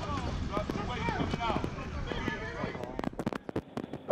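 Faint overlapping voices of players and coaches talking in the background of a football practice, over a low outdoor rumble. In the last second come a few sharp, separate knocks or claps.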